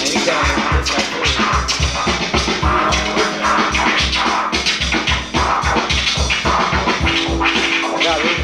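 Vinyl records being scratched on DJ turntables: short, sliding, chopped cuts over a steady drum beat.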